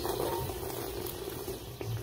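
Carbonated peach marble soda being slurped steadily from a shot glass, a continuous wet hiss that eases off near the end.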